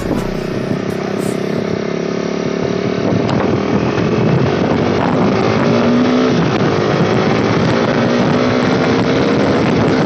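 Bajaj Dominar 250 single-cylinder engine accelerating hard through the gears, its pitch climbing as speed builds, with wind rushing over the microphone.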